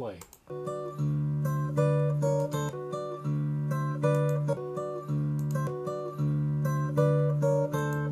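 Playback of a recorded acoustic guitar passage, held notes and chords, coming over the room speakers and picked up by the camera microphone. It starts about half a second in, switches to another microphone's take of the same passage about halfway through, and stops right at the end.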